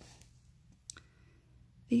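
Faint clicks and light handling noise from a paper picture book being held open and smoothed flat just after a page turn. A woman's soft voice begins right at the end.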